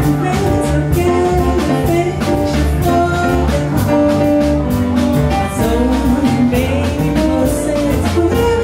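A woman singing with a live jazz band of small plucked guitar, keyboard and drum kit. The Brazilian song is played in the six-eight time of a Goan mando, at double its usual speed.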